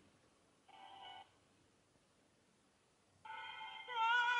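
Near silence between sung phrases, broken by a brief faint high note about a second in and a steady high held note that begins near the end.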